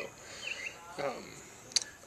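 Crickets chirping steadily in the background on a summer evening, with one sharp click near the end.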